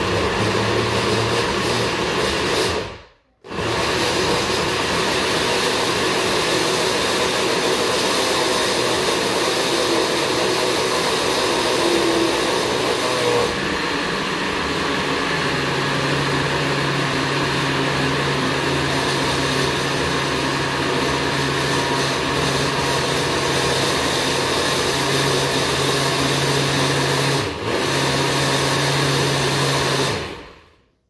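Countertop blender running, puréeing a thick mash of scotch bonnet peppers, mango, onion and citrus juice. It stops briefly about three seconds in and starts again, its tone settles into a steadier hum about halfway through, and it dips for a moment near the end.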